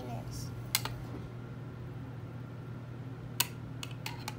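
A few sharp clicks and taps of plastic solar-system model toy parts being handled, one just under a second in and a small cluster near the end, over a steady low hum.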